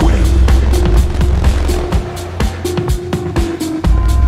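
Rawstyle hardstyle track: distorted kick drums and heavy bass come in abruptly at the start and pound in an even, driving rhythm, with a short repeating synth melody above.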